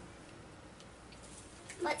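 Faint, sparse light clicks of small plastic toy pieces being handled and fitted onto a plastic toy house, with a girl's voice starting near the end.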